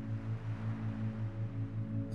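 Isochronic tone: a low hum pulsing on and off about five and a half times a second, over a soft sustained ambient drone.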